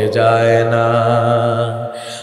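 A man's solo singing voice holding one long, steady note of a Bengali Islamic devotional song (gojol), sung into a microphone, fading out just before the end.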